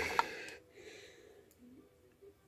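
Faint handling of straight razors, picked up and set down over a wooden board. There is a short hiss in the first half second and a single soft click about one and a half seconds in.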